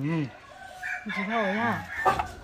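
A rooster crowing: a short call at the start, then a longer, wavering call in the second half.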